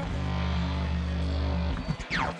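Befaco Eurorack modular synthesizer patch: a sine wave from an Even VCO fed through the PT2399-based Crush Delay, which is modulated by Rampage LFOs, putting out a steady low drone with a stack of low tones. The drone stops about three-quarters of the way through and breaks into a few clicks.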